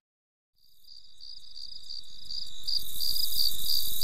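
Crickets chirping, fading in from silence about half a second in and growing steadily louder: a high pulsed chirp about three times a second over a steady high trill.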